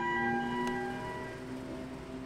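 Porsche flat-six engines running at low revs as the cars crawl through the pit lane: a steady droning tone whose pitch steps down slightly, fading a little after about a second.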